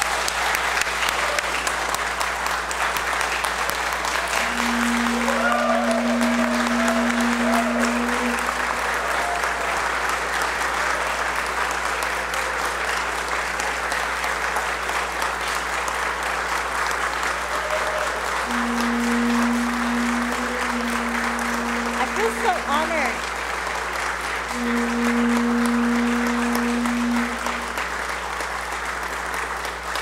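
An audience gives a long standing ovation of steady applause with a few whoops. Three long, steady held tones sound over it, the first about five seconds in and two more in the last third.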